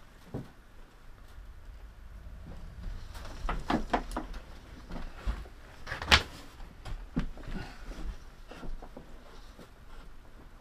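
Scattered knocks, clunks and rustling as drummed pine marten pelts are pulled out of a wooden fur drum and handled. The loudest is a single sharp knock about six seconds in.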